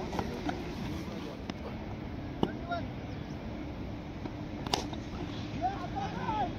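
Outdoor cricket-ground ambience: faint, distant voices of players calling over a steady background noise, with two sharp knocks, one about two and a half seconds in and one near five seconds.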